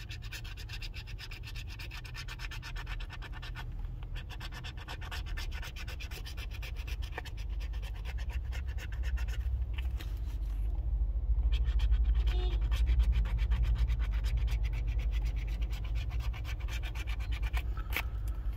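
A coin scratching the coating off a scratch-off lottery ticket in quick, rapid strokes, with a brief pause about ten seconds in. A low rumble sits underneath and grows louder in the second half.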